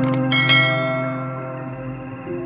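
A mouse click followed by a ringing bell chime with many overtones that fades over about a second: the notification-bell sound effect of a YouTube subscribe animation, over soft background music.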